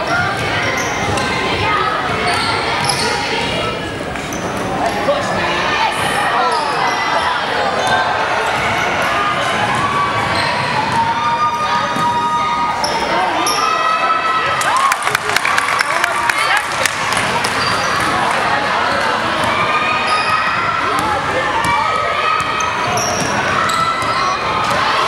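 Basketball bouncing on a gym's hardwood court during a youth game, with short high sneaker squeaks and players' and spectators' voices ringing in the large hall. About 15 seconds in there is a quick run of sharp taps.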